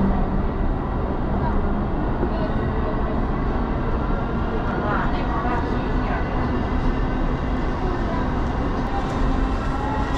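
Disney Resort Line monorail car in motion, heard from inside: a steady running rumble and hum from the train.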